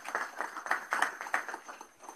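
Audience applauding, the clapping dying away near the end.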